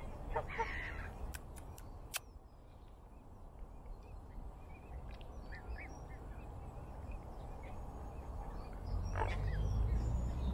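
Water birds calling now and then: one call about half a second in and another near the end, with faint small chirps in between. Underneath is a steady low rumble that swells near the end, and a few sharp clicks come about two seconds in.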